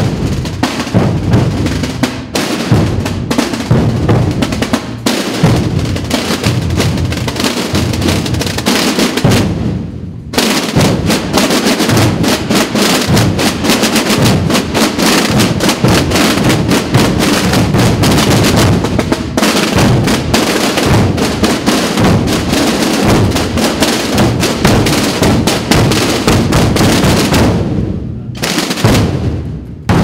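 A marching procession drum corps of snare drums and bass drums beating together with dense, continuous strokes. There is a brief break about ten seconds in, and the drumming thins near the end.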